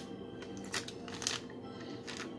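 Plastic cookie package crinkling in the hands: a few brief crinkles, the loudest about three-quarters of a second and a second and a quarter in.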